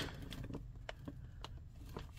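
Quiet room with a low steady hum and two faint light clicks about a second apart, from plastic grocery packaging being handled.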